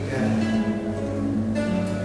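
Acoustic guitar playing a short passage of held chords between sung lines of a song.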